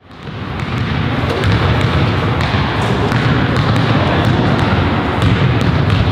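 Many basketballs bouncing on a gym floor, a steady din of dribbling with scattered sharp knocks, fading in at the start.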